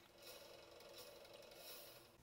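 Near silence: faint steady hiss.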